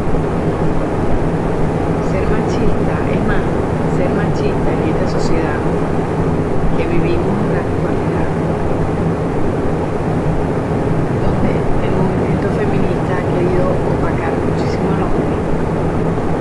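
A loud, steady low hum and rumble, like a running fan or motor, with faint snatches of a voice over it.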